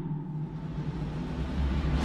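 Intro logo sound effect: a low, steady rumbling drone with a faint hiss above it, swelling louder toward the end.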